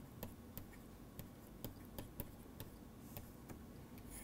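Faint, irregularly spaced clicks and taps of a stylus pen on a tablet screen during handwriting, several a second.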